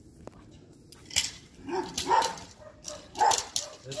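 Belgian Malinois barking a few times in short, sharp bursts while straining on its leash, the barks starting about a second in.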